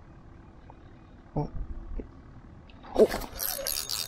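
Quiet, with a couple of soft knocks, then about three seconds in a sudden loud burst of noise with a man's startled exclamation as a fish takes the bait.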